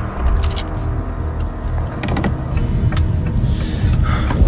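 Car engine running, heard from inside the cabin as the car sets off, as a steady low rumble with a few small clicks.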